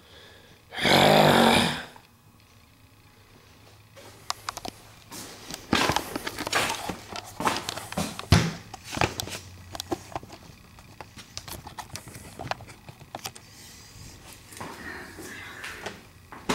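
Camera handling noise: a loud rushing burst about a second long near the start, then irregular clicks, knocks and rustles as the camera is moved around and pressed against clothing.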